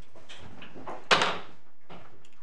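A door clunks shut about a second in, with a few lighter knocks and shuffles around it in the courtroom.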